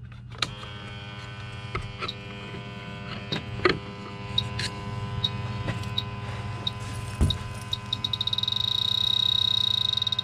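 Bacharach H-10 PRO electronic refrigerant leak detector running after being switched on: its pump hums steadily while it gives short, sharp ticks, spaced out at first, that speed up near the end into a rapid run and merge into a steady high beep. Two louder knocks come from handling it.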